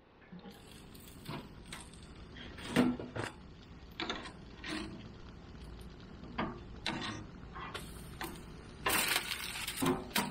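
Metal grill tongs clicking and clacking against the grates of a gas grill as fish is turned, in irregular single knocks, with a short burst of rustling noise about nine seconds in.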